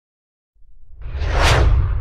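Whoosh sound effect of an animated logo intro: silent for the first half second, then a deep rumble comes in and a rushing swell builds to a peak about a second and a half in before fading.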